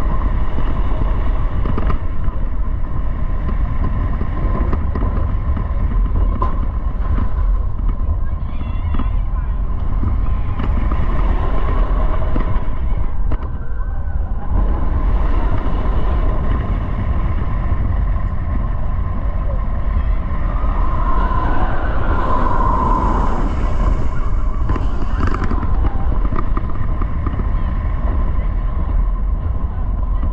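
Wind rushing over the microphone with the roar of a Bolliger & Mabillard floorless steel roller coaster train running along its track at speed. There is a brighter, hissier stretch about two thirds of the way through.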